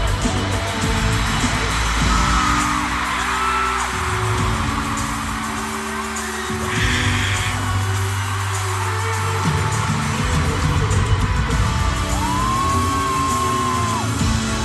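Live pop band in an arena playing held low chords that change every second or two, under a crowd cheering and screaming, recorded on a phone in the audience.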